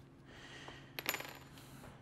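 Small metal valve parts clinking once against a steel workbench about a second in, with a short high ring after the click.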